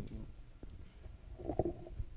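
A low rumble of room noise, with a short murmured voice sound about one and a half seconds in.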